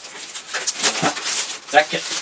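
Plastic packaging rustling and crinkling as a plastic-wrapped item is pulled out of an opened cardboard product box.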